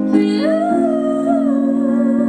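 A young woman singing solo into a microphone over steady backing chords; about half a second in her voice slides up into a long held note that wavers with vibrato.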